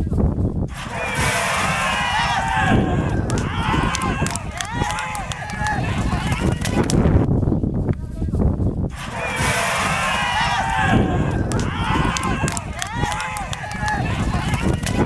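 Many overlapping voices shouting and calling out, with scattered sharp clicks over a steady low rumble. A stretch of about six to seven seconds of this sound plays twice.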